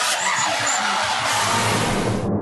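Drift cars sliding sideways through a bend: engine noise under a loud, steady hiss of skidding tyres.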